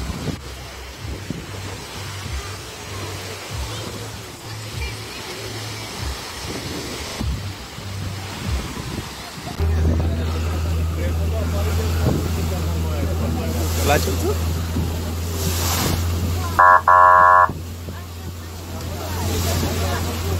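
Voices and small waves at the water's edge, then from about halfway a small tour boat's engine running with a steady low drone as it moves, water rushing past the hull. Near the end a loud, even tone lasts about a second.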